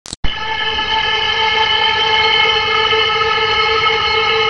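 A loudspeaker in a box playing one loud, steady, buzzy horn-like tone that starts abruptly just after the start and holds without change.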